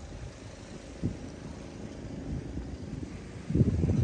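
Wind buffeting the microphone: a low rumble in uneven gusts, swelling briefly about a second in and more strongly near the end.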